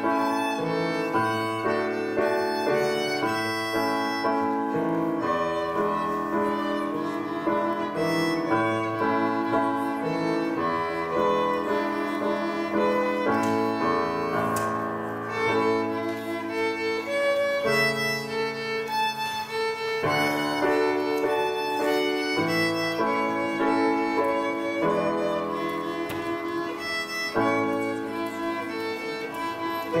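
Violin played by a young student with grand piano accompaniment, performing a set of variations on a simple tune; the bowed melody and the piano chords play continuously.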